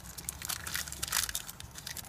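Paper crinkling with irregular small crackles as it is folded and pressed by hand around coins.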